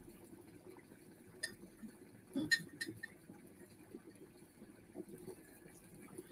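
A few light clinks from a ceramic tea mug being handled, the loudest about two and a half seconds in, over quiet room noise.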